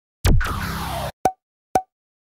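Edited-in intro sound effects: a sudden falling swoosh lasting under a second, then two short pitched pops half a second apart.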